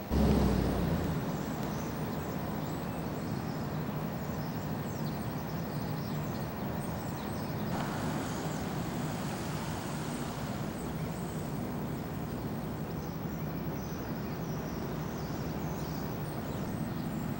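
Steady outdoor background noise with a low rumble, as of distant road traffic. It starts abruptly with a brief low thump.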